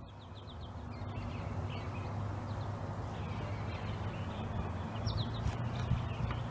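Outdoor background: a steady low rumbling noise with birds calling faintly now and then, once near the start and again about five seconds in.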